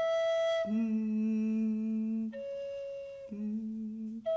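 Recorder played in slow, long-held notes that switch back and forth between a high note and a much lower one, each held for about a second or more.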